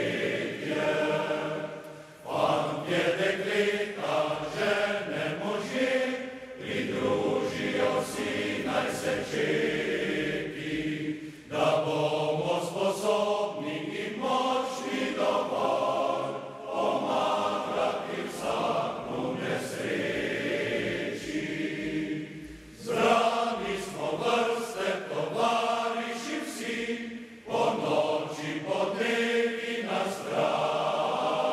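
A large mixed choir of men and women singing a song unaccompanied, in long phrases of about five seconds, each followed by a brief breath pause.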